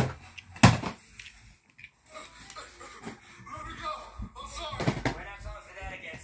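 Two sharp knocks at the start, about two-thirds of a second apart, then a child's voice talking or vocalising unclearly.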